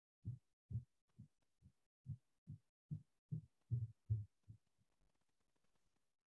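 A quick, even series of soft, low thumps, about two or three a second, stopping about four and a half seconds in.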